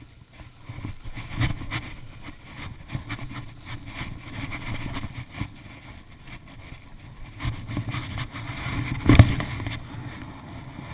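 Skis running and scraping over packed, chopped-up snow, with a low wind rumble on the microphone. About nine seconds in, a sharp thud as the skier lands a small jump.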